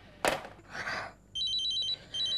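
A telephone ringing with a rapid, warbling two-tone electronic trill, in one burst in the second half. Before it come two short breathy sounds.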